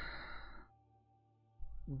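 A man's breathy sigh into a close microphone, fading out within about a second, then a short hush before his speech resumes near the end.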